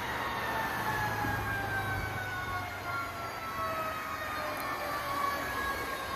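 Distant fire truck siren, a long tone slowly falling in pitch as the tower ladder truck approaches, over the rush of passing highway traffic.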